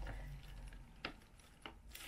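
Faint handling noise of a shrink-wrapped CD album held in the hands: a few light clicks over a low, steady hum.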